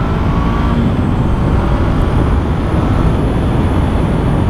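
2022 Honda CB500F's parallel-twin engine pulling under acceleration at road speed, with a slight rise in pitch in the first second. Wind rushes over the microphone with a heavy low rumble throughout.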